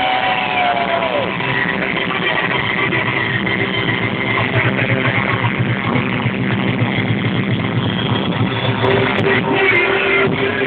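Live band playing loud amplified music through an outdoor PA, guitars to the fore, with a falling pitch glide in the first second. Heard from out in the crowd, dull and muffled.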